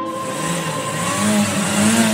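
Instrumental pop track intro: held synth tones with a loud rushing noise sweep that comes in suddenly and swells slightly, building toward the beat.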